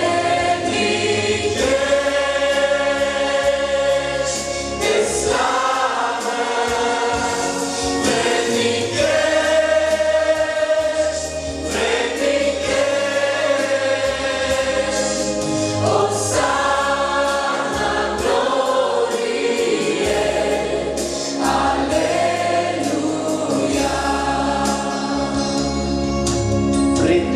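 Mixed male and female worship group singing a Romanian gospel hymn in chorus, with held sung chords over a steady instrumental bass line.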